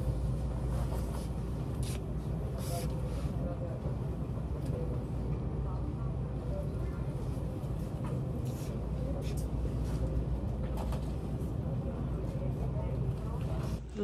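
Busy shop ambience: a steady low hum with faint distant voices and occasional light clicks and knocks.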